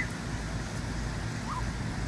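Wind buffeting the phone's microphone: a steady low rumble with a faint haze above it, and one brief faint high call about three-quarters of the way through.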